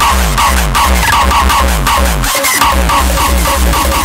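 Loud hard electronic dance music from a DJ set: heavy kick drums that drop in pitch, about two and a half a second, over a deep bass, with a short repeating synth riff above.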